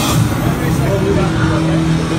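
Indistinct voices and crowd noise, with a steady low hum that begins about a second in.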